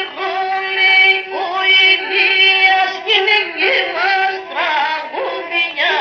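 Pontic lyra (kemençe) playing a dance melody over a steady drone note, with frequent sliding ornaments between notes.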